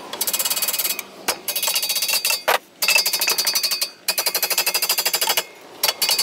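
Fast metallic tapping in four bursts of about a second each, a tool rattling against a pressure washer's pump housing to knock the stuck pump off the engine shaft.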